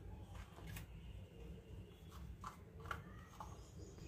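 A few faint clicks and taps of small kitchen containers being handled, over a low steady hum.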